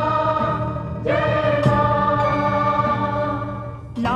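Soundtrack of a Hindi devotional song to the Mother Goddess: a chorus holding long sung notes over a steady low drone. A new held phrase starts about a second in and fades away near the end.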